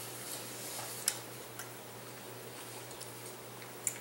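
A metal fork clicking and scraping in a pot pie dish, a few sharp clicks with the strongest about a second in and another near the end, over quiet chewing of a mouthful.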